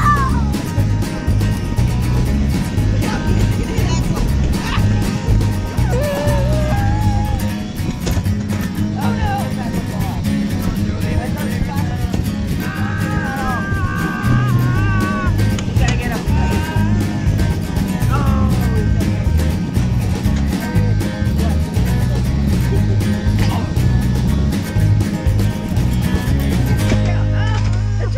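Upbeat instrumental background music with a steady beat, voices faintly beneath it; near the end the beat stops, leaving a held low note.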